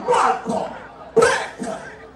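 A loud shouted human voice in two bursts, the second starting abruptly about a second in, sharp like a cough.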